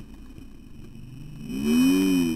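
A low steady rumble, then, about one and a half seconds in, a loud drawn-out wordless vocal sound that bends up and down in pitch.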